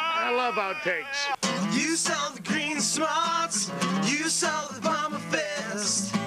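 Acoustic guitar strummed with two men singing along. Voices come first, and the guitar comes in with a chord about a second and a half in.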